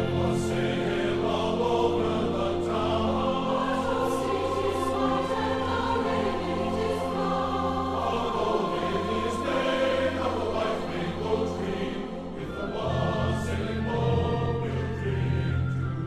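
A choir singing a Christmas carol, voices held on long notes over a steady low accompaniment.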